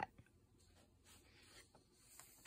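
Near silence, with a faint soft rustle of a hand on a paper coloring-book page in the second half.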